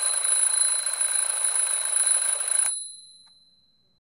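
A twin-bell alarm clock ringing steadily for nearly three seconds, then stopping, its high ring dying away over about a second.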